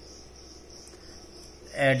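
A steady, high-pitched insect trill in the background, with a man's voice starting near the end.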